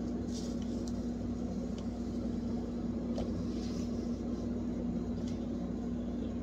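A steady low hum runs throughout, with faint, scattered rubbing of a knitted cloth wiping a fridge door's rubber seal.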